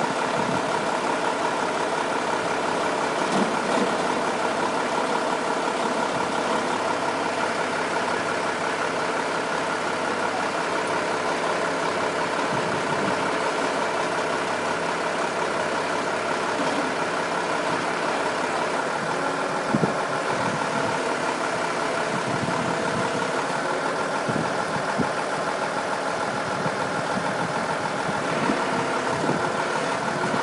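A heavy diesel engine idling steadily, with a deeper hum underneath that drops out about two-thirds of the way through.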